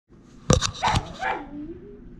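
Poodle barking twice, sharply, about half a second apart, then making a drawn-out whining sound that slides down in pitch.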